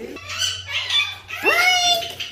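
Pet parrots calling: a run of short, high chirps, then a louder call about a second and a half in that rises sharply and holds.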